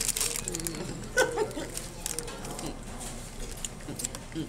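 Crisp crackling from a hard taco shell and its paper wrapper in the first half second. A short vocal sound follows about a second in, over faint voices.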